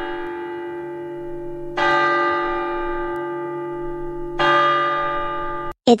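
Bell-toned clock chime ringing three strokes. One stroke is already sounding at the start, a second comes at about two seconds in and a third just after four seconds, and each rings on and slowly fades. The chime signals that it is time to go.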